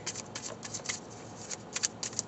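A deck of tarot cards being shuffled by hand: a run of quick, uneven clicks and flicks as the cards slide against each other.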